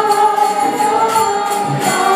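Kirtan music: a harmonium playing sustained chords, with voices singing and small hand cymbals chiming in time.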